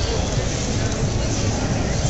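Steady low rumble of a ride-on Dalek prop rolling across a hard hall floor, under continuous crowd babble.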